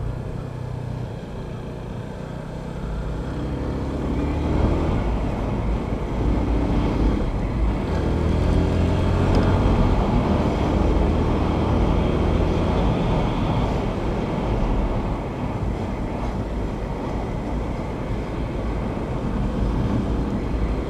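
Yamaha FZ25 single-cylinder motorcycle engine running under way as the bike speeds up, its note rising in pitch more than once and growing louder over the first half. Wind and road noise sound on the onboard microphone.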